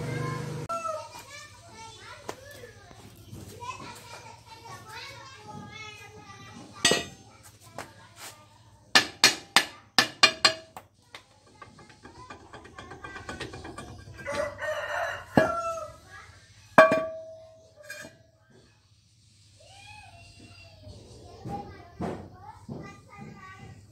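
A rooster crowing and chickens calling, with a run of five sharp knocks in quick succession about nine seconds in and a few single knocks later, the loudest near the end.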